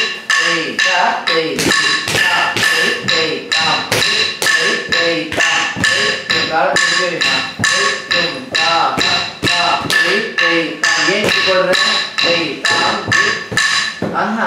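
Sollukattu rhythm recitation: a voice chanting dance syllables in time with small hand cymbals struck roughly twice a second, their bright ringing carrying on between strikes.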